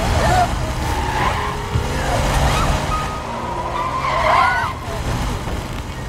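A car driven hard through turns, its engine rumbling under wavering tyre squeal, with the squeal loudest a little past the middle.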